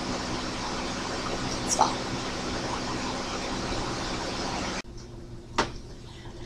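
Steady room-noise hiss with no speech, and a faint brief sound a little under two seconds in. About five seconds in, the hiss drops off abruptly to a quieter background, followed by a single short click.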